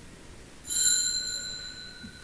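A small altar bell struck once, a bright ring of several high tones that fades, with a lower tone lingering.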